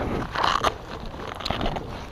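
Rustling camera-handling noise and a few soft footsteps on asphalt from someone walking with a carried camera, over a faint outdoor background noise. It is louder in the first second and quieter after.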